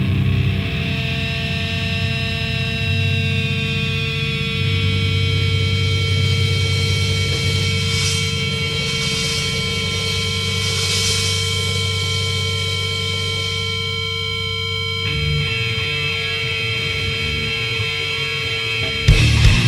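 Metal band's demo recording in a slow, droning intro: guitars hold steady sustained notes over a dense low rumble, with a few swells of high noise near the middle and a change of pattern near the end.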